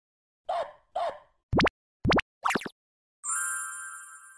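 Cartoon-style logo intro sound effects: two quick plops, two fast rising zips and a wobbly glide, then a shimmering chime that rings on and slowly fades.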